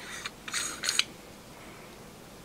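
Short scratchy handling noises from a small USB camera and its manual zoom lens turned and gripped in the hands: a few quick rasps within the first second, then quiet.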